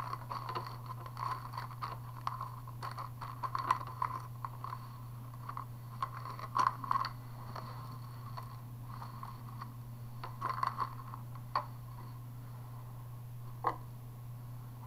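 Small plastic zip-lock bags of beads and strung bead strands being handled and set down on a table: irregular light rustles and clicks, busiest in the first half and again a little before the end, over a steady low hum.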